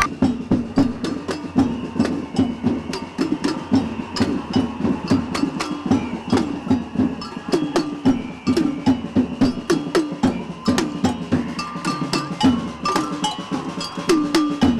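A street drum group of snare drums played with sticks, beating a steady, fast rhythm of sharp, clicking strokes.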